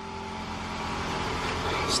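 A 2010 Toyota Camry Hybrid switched on and running, giving a steady hum that grows a little louder toward the end.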